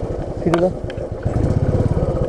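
Royal Enfield Bullet's single-cylinder engine running at low speed on the move, an even train of low pulses. A brief vocal sound comes about half a second in.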